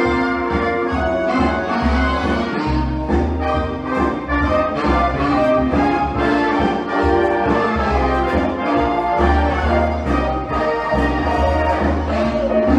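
Big-band swing backing track with brass playing an instrumental passage, with no singing over it.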